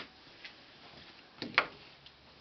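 A few short sharp clicks and knocks, the loudest a pair about one and a half seconds in.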